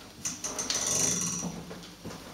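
Rustling, scraping handling noise of a person moving into the room, starting a quarter second in, loudest around the middle and fading out before the end, over a faint steady low hum from the amplification.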